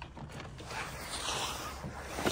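Hands handling a rebuilt car door mirror: a faint scraping and rustling of plastic and glass that swells a little about a second in.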